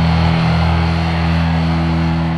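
Speed/thrash metal music: electric guitars and bass holding one steady, ringing chord.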